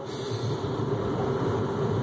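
Steady cabin noise inside a car: an even rush of noise with a constant hum, and no sudden sounds.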